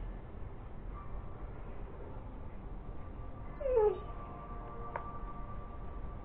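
A dog gives one short whine that falls in pitch, a little past halfway through, over a steady low background hum.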